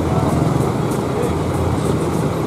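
Steady low rumble of idling vehicle engines, with faint voices in the background.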